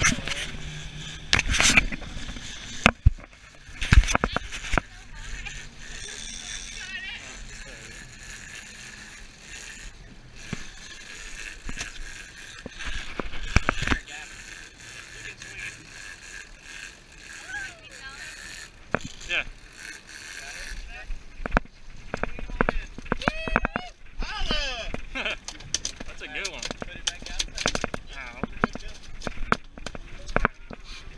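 Knocks and rubbing of an action camera being handled, loudest in the first few seconds, over a steady rush of wind and water on a moving boat, with muffled voices in the background.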